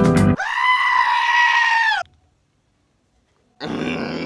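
A sheep giving one long, loud bleat that sounds like a human scream, held at an even pitch for about a second and a half, dipping slightly at the end and then cut off abruptly.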